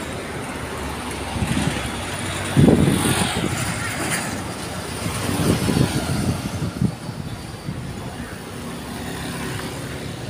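Road traffic noise from passing vehicles, with a louder low rumble about two and a half seconds in and more swells a few seconds later as vehicles go by.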